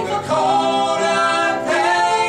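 A man and a woman singing a Broadway ballad duet live, their voices together on long held notes.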